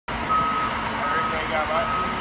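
A steady high electronic beep repeating on and off about twice a second, over a continuous rushing background noise.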